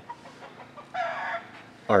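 A single short, high-pitched animal call about a second in, lasting under half a second.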